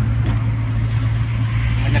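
Steady low drone of a car driving at highway speed, heard inside the cabin.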